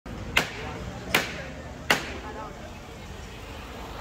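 Three sharp knocks of a capataz's llamador striking the costaleros' rehearsal frame, evenly spaced under a second apart, each with a short ringing tail: the call to the bearers beneath it. Low crowd chatter underneath.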